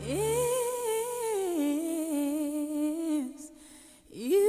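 A female lead vocal from a Christmas pop song sings one long note. It scoops up, wavers with vibrato, then steps down to a lower note and fades out about three seconds in, while the backing music drops away just after it begins.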